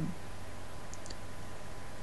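A pause in speech: steady low hum and hiss of the room and recording, with a couple of faint small clicks about a second in.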